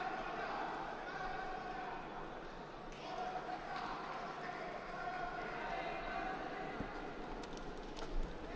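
Murmur of an arena crowd with indistinct voices calling out, echoing in a large hall.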